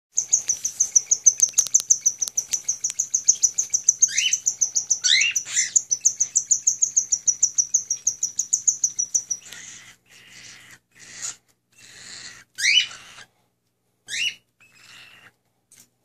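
Cockatiels chirping: a fast, even run of high chirps, about four or five a second, for the first nine seconds or so, with a few short upward-sweeping calls over it. After that come scattered, raspy calls separated by short gaps.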